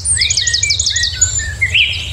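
Birds chirping: a quick run of short falling chirps, about six a second, through the first second, then lower, spaced calls, all over a steady low rumble.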